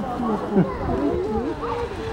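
A polar bear cub calling, amid people's chatter.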